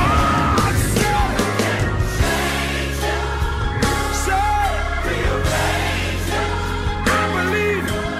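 Gospel song playing: sung melodic lines over a band with steady bass and drums.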